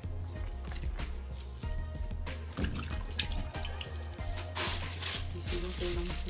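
Background music plays while plastic food wrapping rustles and clicks. About four and a half seconds in, a steady rush of tap water running into a sink starts.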